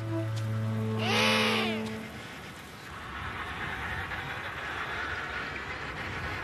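Background music holding low sustained notes, with an emperor penguin's brief warbling call, its pitch arching up and down, about a second in. After that a steady hiss fills the rest.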